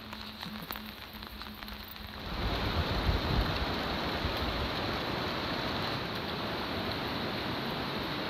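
Light rain falling, with scattered drops ticking at first; a little over two seconds in, the sound jumps to a louder, steady hiss of rain.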